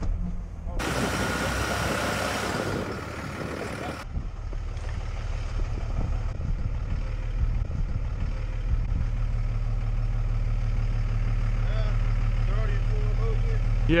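Pickup truck engine idling steadily with a low hum. A rushing hiss covers the first few seconds, from about one second in to about four seconds in.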